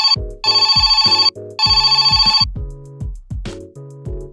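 A telephone ringing in trilling bursts: the end of one ring, then two more, each a little under a second long. The ringing stops about two and a half seconds in, and background music with a bass line carries on alone.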